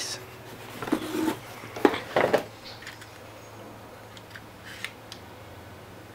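Packing-material handling: short crinkles and clicks of paper, bubble wrap and a plastic tie as a scale model pump truck is lifted from its box, bunched about one and two seconds in, then only faint ticks.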